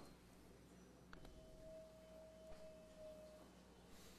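Near silence: room tone with a faint, steady, single-pitched tone that starts about a second in and lasts about two seconds, and a few faint clicks.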